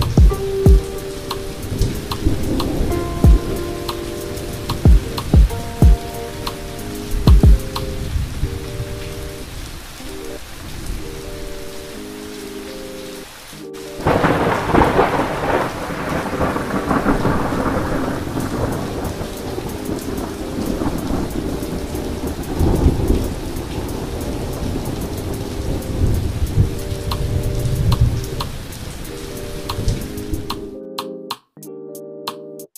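Thunderstorm: steady rain with rumbles of thunder, and a loud thunderclap about halfway through that dies away over several seconds. Low, sustained tones sound under the rain in the first half and again near the end.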